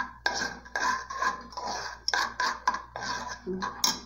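Metal spoon scraping and clinking against the bottom and sides of an aluminium saucepan in quick repeated strokes, about three a second, while stirring crystal sugar that is melting into caramel with small lumps still in it.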